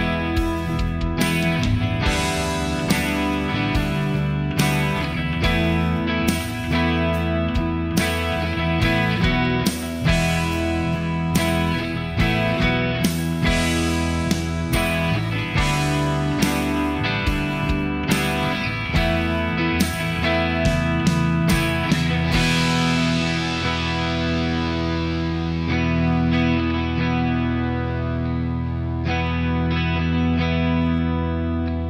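Demo tune on an Enya Nova Go Sonic carbon-fibre guitar: distorted electric guitar over a steady beat. The beat drops out about two-thirds of the way through, leaving sustained ringing chords.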